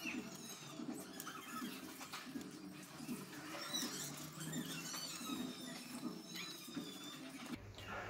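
Faint high-pitched animal calls: short squeaky chirps that glide up and down, scattered through, over a low background murmur.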